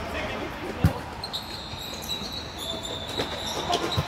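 Volleyball being hit during a rally on an indoor court: one sharp, loud hit about a second in and lighter hits near the end. Players' voices can be heard, and a steady high squeal sets in from about a second in.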